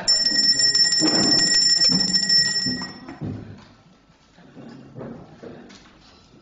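A bell ringing in a fast, steady, high trill for nearly three seconds, then cutting off, the signal that the council session is resuming after a break.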